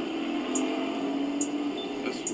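A steady low hum with light background hiss in a pause between speech; the hum fades out shortly before the end.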